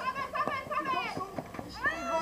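Several people's voices calling out and chatting on the field, overlapping, with no single clear words.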